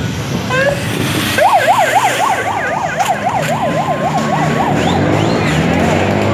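Police car siren: a brief chirp, then a fast yelp wailing up and down about four times a second for roughly three seconds before cutting off, over street noise.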